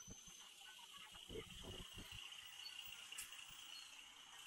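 Faint, steady buzzing of insects in the street trees, with a few soft low thuds about a second and a half in.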